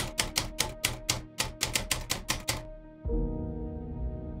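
Typewriter keys clacking as an editing sound effect: about fifteen quick, uneven strokes over a faint music bed. They stop a little under three seconds in, and a low sustained music chord comes in.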